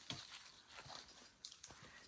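Faint, scattered footsteps on rocky, leaf-littered ground: a few soft crunches and taps.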